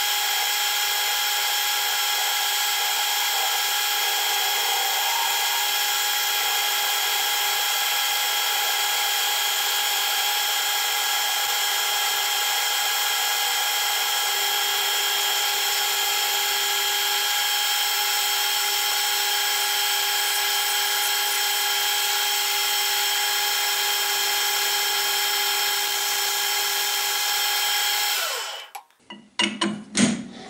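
Metal lathe running at steady speed while turning a small shaft, a constant whine of several even pitches. Just before the end it is switched off and winds down to a stop, followed by a few light knocks.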